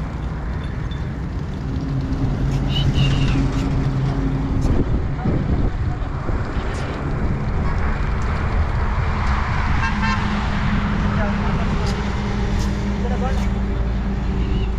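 Road traffic: a steady low rumble, with a long low vehicle horn sounding for about three seconds from near two seconds in.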